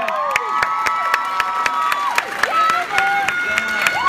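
A large auditorium audience cheering: long whoops and shouts from many voices over scattered clapping.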